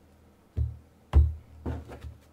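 Several short, soft thumps and taps of a tarot deck being handled on a table, the loudest a little past the middle.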